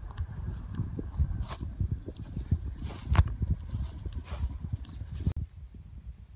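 Wind buffeting the microphone in a low, gusty rumble, with footsteps on a dirt track and a few sharper knocks.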